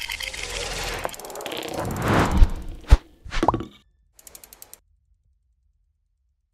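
Sound effects of an animated logo sting. A whoosh swells for about two seconds, then comes a sharp hit about three seconds in, a short upward swoop, and a quick run of about six ticks.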